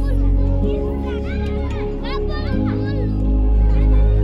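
Children's voices calling and shouting while they play, over background music of held low chords that change twice.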